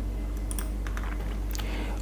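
A few faint, scattered clicks at a computer over a steady low hum.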